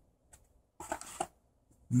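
A brief soft rustle with a few light clicks about a second in, from a trading card being handled against a clear plastic tin insert.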